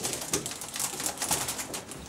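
Bare feet treading grapes in a wooden vat: a dense run of wet crackles and squelches as the bunches are crushed.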